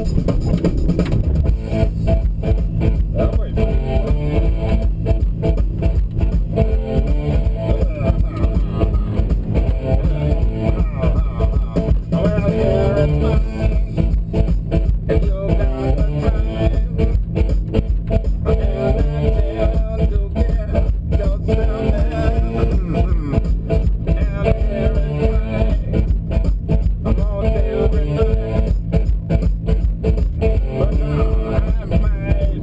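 Background music: a song with a steady beat.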